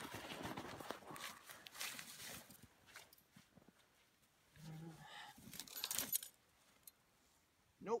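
Rustling and crunching of snow, clothing and fur as a snared coyote's body is turned over and handled, with a short crackling burst about six seconds in.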